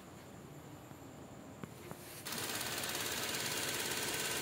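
Two faint clicks, then a little past halfway the Toyota Soluna's 16-valve EFI four-cylinder engine starts suddenly and runs steadily. This is its first start after a broken timing belt was replaced, and it runs.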